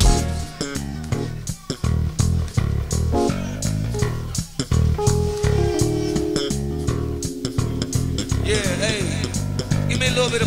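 A go-go band playing live: a repeating bass guitar line over drums and percussion, with guitar, and a long held note in the middle.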